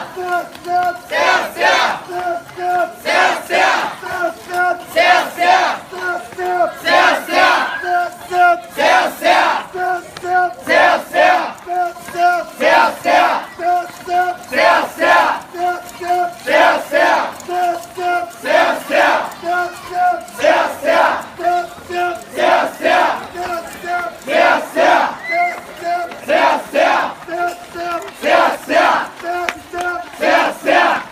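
A group of portable-shrine bearers chanting together in a steady rhythm, one shouted call about every second. A short pitched tone pulses regularly between the calls.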